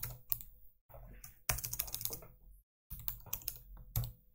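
Typing on a computer keyboard: a quick run of keystrokes with a short pause a little before the end.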